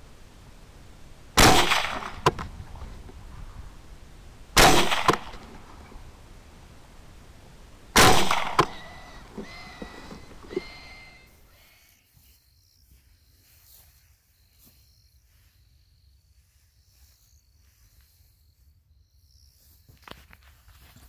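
Three rifle shots fired at feral hogs, about three seconds apart, each loud and sharp with a short echo. A few fainter clicks follow the last shot, and then only a low hiss remains.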